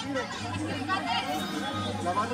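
Indistinct chatter of several people talking nearby, quieter than the commentary, with a low hum underneath at times.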